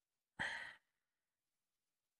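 A short sigh, a breathy exhale into a close studio microphone, lasting under half a second, a little way in; otherwise near silence.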